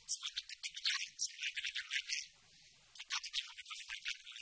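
A man speaking, heard only as thin, hissy high-pitched fragments of his syllables with the lower part of the voice missing, so that it sounds like a rattle more than words. There is a short pause a little after two seconds in.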